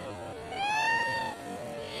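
A single drawn-out meow-like call that rises and then falls in pitch, from about half a second in until just under a second and a half.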